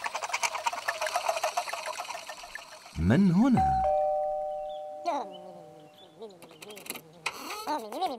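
Fast, even clattering of the Ninky Nonk toy train as it runs off. About three seconds in comes a loud sliding, voice-like whoop, then a held two-note chime-like tone and more wavering cartoon vocal sounds.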